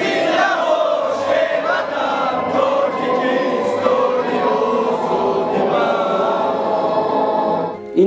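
A crowd of young men singing the national anthem together in unison, loudly and steadily. The singing breaks off just before the end.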